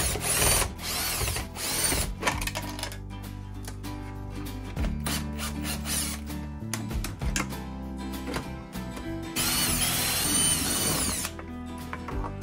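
Cordless drill-driver spinning screws out of a plastic enclosure cover in short bursts: three quick runs in the first two seconds, then a longer run of about two seconds near the end.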